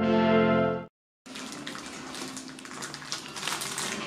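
A held chord of soft ambient intro music that fades out about a second in; after a brief silence comes a soft rustling hiss of hair being handled and separated close to the microphone.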